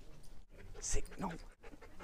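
Siberian husky panting on a leash, with a man's brief words over it.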